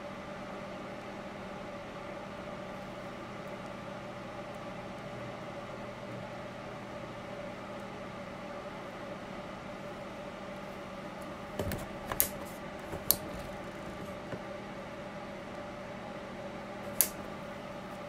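Steady hum of a small motor, likely a tumbler cup-turner rotating the epoxy-coated tumbler. A few light clicks and taps from a wooden stick against a small cup of epoxy come about twelve and thirteen seconds in, and once more near the end.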